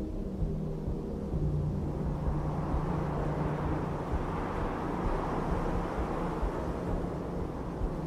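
A steady low rumbling drone under a hiss that swells toward the middle and eases off near the end.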